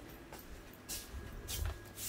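Plastic smoke-detector camera housing being handled: a few short rustles and clicks, about a second in and again around a second and a half in.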